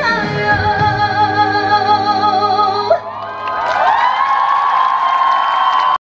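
A female trot singer holds a long final note with vibrato over live band accompaniment; it ends about three seconds in. Audience whoops and cheering then rise as the song closes.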